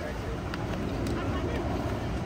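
Wind buffeting the microphone: an irregular low rumble over a steady outdoor hiss, with a couple of faint clicks.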